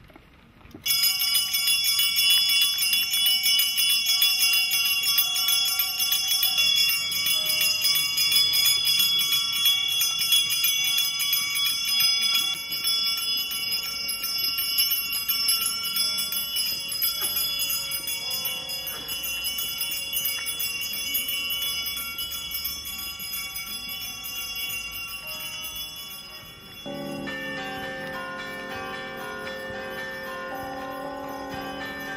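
Small hand-held altar bells (sanctus bells) shaken continuously to mark the blessing with the Blessed Sacrament: a bright, rapid, high ringing that starts about a second in and slowly fades. Near the end a lower sound with several steady tones takes over.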